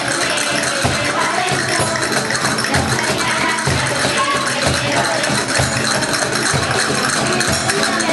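Children's choir performing a sevillana, with deep cajón beats and rattling hand percussion under the voices.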